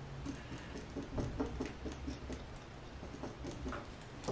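Faint, irregular scratching and small ticks of a marking pen worked against cotton fabric and a clear plastic quilting ruler, with light handling of the fabric.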